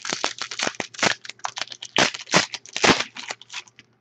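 Foil trading-card pack wrapper being torn open and crinkled in the hands, a fast, uneven run of crackling rustles.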